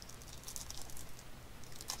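Faint, soft rustles and scrapes of cardboard trading cards being handled and slid against each other, over a low steady hum.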